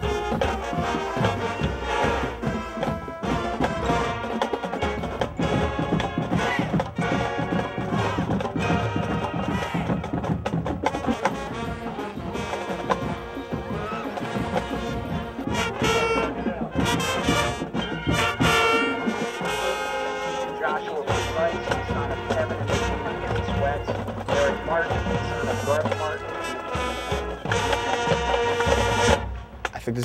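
Marching band music: brass and saxophones playing over drums, breaking off just before the end.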